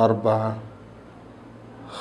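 A man's voice for about half a second at the start, a short spoken word or breath, then only quiet room tone.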